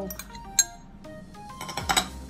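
Background music, with a sharp clink on a glass mixing bowl about half a second in and a few more clinks near the end as a spoon works in the bowl.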